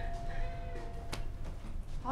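Glass entrance door being pushed open: a short hinge squeak, then a sharp click about a second in as it swings.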